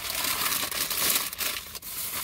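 A shopping bag crinkling and rustling as hands rummage through it, with a few sharp crackles.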